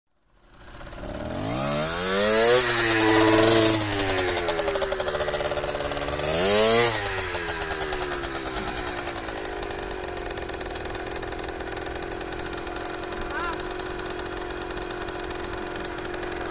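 Fantic two-stroke trials motorcycle engine, revved up twice with the pitch rising and falling each time, then settling to a steady idle from about ten seconds in.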